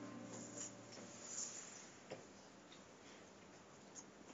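Faint room tone with a few small clicks and rustles; the tail of a video's intro music fades out in about the first second.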